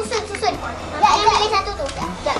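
Young children's high-pitched voices chattering as they play.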